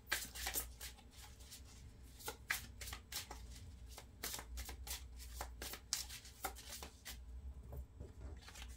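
A deck of tarot cards being shuffled by hand: a quick, irregular run of soft card snaps and slaps as the cards slide against each other.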